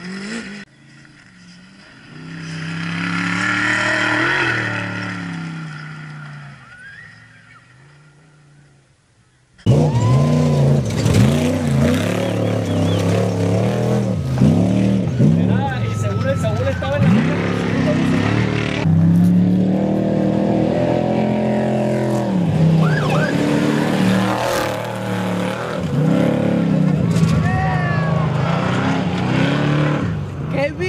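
Off-road race vehicle engine passing at speed, swelling to a peak about four seconds in and fading away. After a cut about ten seconds in comes louder, continuous engine noise from race vehicles, the pitch repeatedly revving up and dropping as they accelerate past.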